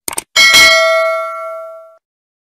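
Two quick sound-effect clicks, then a single bright bell chime that rings out and fades over about a second and a half: a notification bell sound effect for a subscribe animation.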